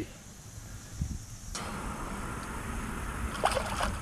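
Steady outdoor noise of moving water, then a short burst of splashing near the end as a hand reaches into the stream.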